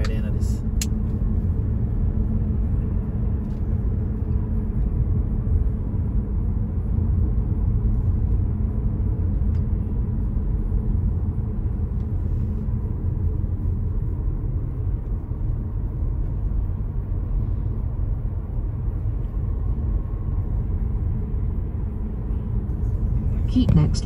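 Steady low rumble of a car driving on the road, the engine and tyre noise heard from inside the cabin.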